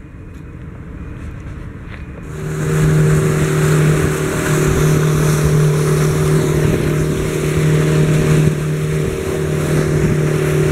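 Faint outdoor ambience, then, a little over two seconds in, a motorboat's engine running at speed with a steady drone, under loud rushing water and wind.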